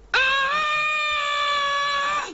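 A young woman's long, high-pitched yell, held on one steady note for about two seconds.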